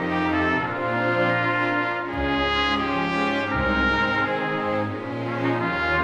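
Background music: a slow piece of held chords, the notes changing about every second.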